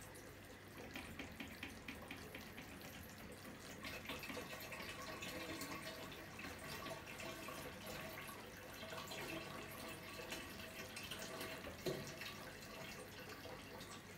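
Faint steady trickle of aquarium water running out through a gravel siphon hose as the tank bottom is vacuumed, with small irregular drips and a soft knock near the end.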